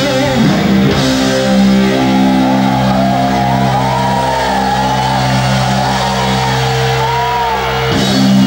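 Live rock band with distorted electric guitars holding one long sustained chord that rings out, with wavering, bending higher notes arching above it. The held chord cuts off sharply at the very end.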